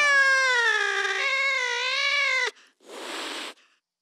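A long drawn-out cat meow, sliding down in pitch and wavering, cuts off sharply about two and a half seconds in. A brief burst of hissing noise follows. This is the closing sample of an electronic drumstep track.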